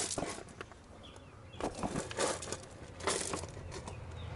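Scattered rustling and light clicks and knocks from handling, in a few short clusters, over a faint steady low hum.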